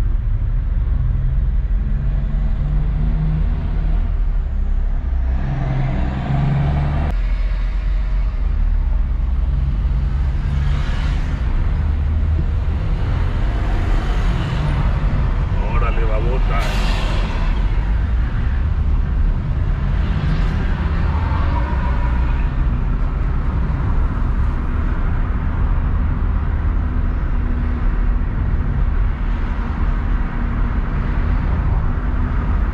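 Road noise of a car driving in city traffic, heard from inside the car: a steady low engine and tyre hum, with a louder passing sound about sixteen seconds in.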